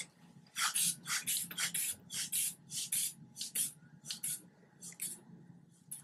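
Rubber hand bulb of an aneroid blood pressure cuff squeezed over and over to inflate the cuff. Each squeeze gives a short puff of rushing air, about two a second.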